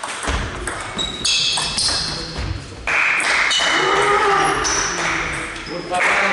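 A table tennis rally: the ball clicks sharply off bats and table, with shoes squeaking on the sports-hall floor. About halfway through the rally ends and voices over louder background noise take over.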